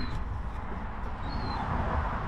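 Outdoor background noise: a steady low rumble, with a faint short high chirp about one and a half seconds in.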